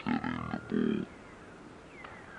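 A man laughing briefly, then a faint, steady outdoor background.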